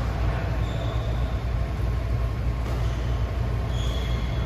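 Steady low rumble of a large indoor badminton hall, with a racket striking a shuttlecock once about two-thirds of the way through and brief high shoe squeaks on the court mat, one near the start and one near the end.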